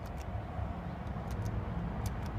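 Low, steady rumble of a motor vehicle engine, with a few faint sharp clicks in pairs.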